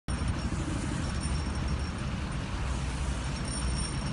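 Steady low rumble and hiss of road traffic, with faint thin high tones coming and going above it.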